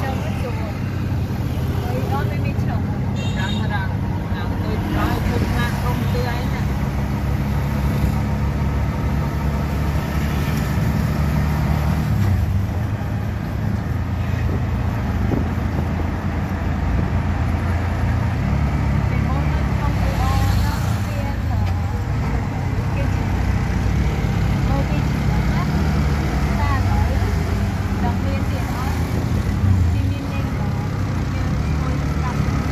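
Engine and road noise heard from inside a moving auto-rickshaw: a steady low hum and rumble, with the sound of surrounding city traffic.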